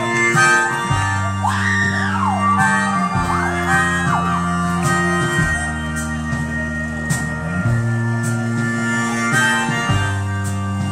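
Live rock band playing, with a harmonica solo played into the vocal microphone over sustained chords and a bass line that changes every second or two.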